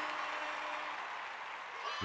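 Crowd applause fading out, with a single held tone that stops about halfway through.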